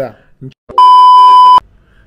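A loud, steady, high-pitched electronic bleep of under a second, switching on and off abruptly in the middle of speech: a censor bleep.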